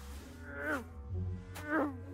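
An insect-like buzzing whine in two short swoops that bend up and then down in pitch, the second one louder, over a low steady hum.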